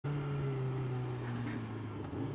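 Sport motorcycle engine running at low revs as the bike rolls slowly, a steady hum that eases slightly lower in pitch in the second half.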